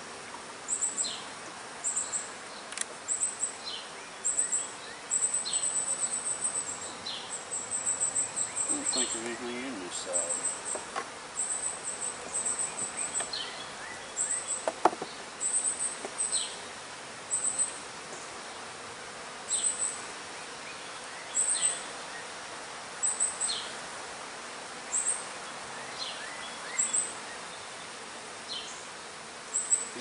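High-pitched insect chirping, short chirps repeating every second or two, some running together into a longer trill about 5 to 9 seconds in, over a steady outdoor hiss. A single sharp click near the middle comes from a metal hive tool against the wooden hive box.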